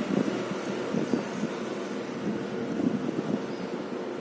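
Steady background noise with no speech.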